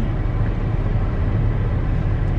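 Steady low rumble of a running car heard inside the cabin.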